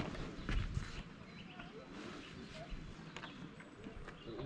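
A few soft footsteps or knocks in the first second and again near the end, over faint outdoor background.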